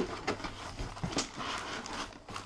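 Cardboard packaging scraping and rustling as a plastic-wrapped comb binder in cardboard inserts is slid out of its box, with a sharp knock at the start and another about a second in.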